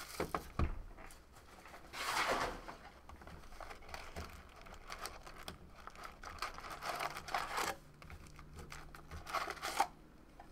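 Plastic shrink wrap crinkling and tearing off a trading-card box, loudest about two seconds in, then lighter rustling and taps as the cardboard box is opened and the card packs are taken out and stacked.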